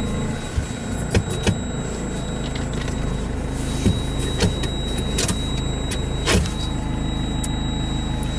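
GAZelle van's Cummins 2.8-litre four-cylinder turbodiesel idling steadily. A few sharp clicks and knocks come over it, along with a thin steady high-pitched tone.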